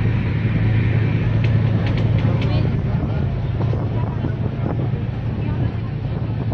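Steady low rumble of a passenger train coach running, heard from inside the carriage, with faint passenger voices mixed in.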